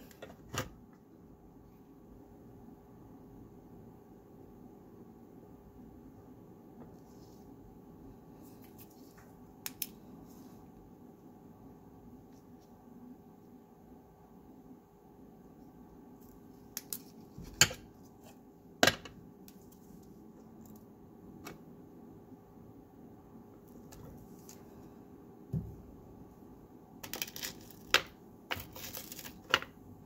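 Quiet room with a steady low hum, broken by a handful of sharp little clicks and taps from small hand tools being handled. Two of the clicks come about a second apart in the middle, and a quick cluster comes near the end.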